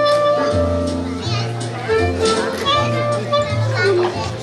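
Clarinet playing a jazz melody in long held notes over low bass notes, with children's voices in the background.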